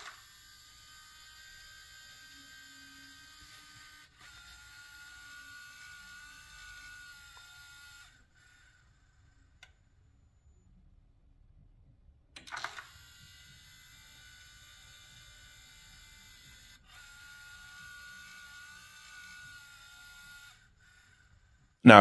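A faint, steady electrical buzz from the engine bay of a switched-off BMW. It starts with a click, runs about eight seconds and stops, then clicks on again about twelve seconds in and runs another eight seconds. This is the car failing to go to sleep after shutdown: apparently the electronic thermostat, kept awake because the Motiv Reflex port-injection controller is powered from the DME tap.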